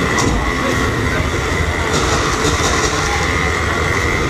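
Ride train rolling along its track, with a steady high-pitched wheel squeal over a low rumble.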